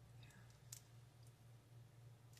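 Near silence over a steady low hum, with a few faint clicks as fingers handle a small piece of foam tape; the clearest click comes about three-quarters of a second in.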